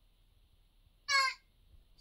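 A toddler's short, high-pitched vocal squeal, once, about a second in, as he tries to repeat a family name.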